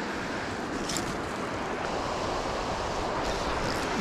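Shallow creek water rushing steadily over stones.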